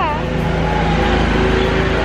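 Low steady engine rumble of a small motorized trackless street train approaching along the road, over street traffic noise.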